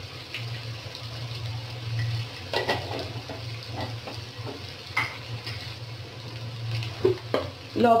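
Pumpkin and onions frying in an aluminium karahi with a low steady sizzle. A spoon clinks against the metal pan a few times.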